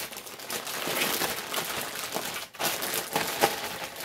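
Plastic gallon zip-top bag crinkling as hands press it shut and seal it, with marinated beef slices inside; a short pause comes about two and a half seconds in.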